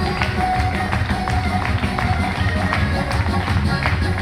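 Ukrainian folk dance music with a steady beat.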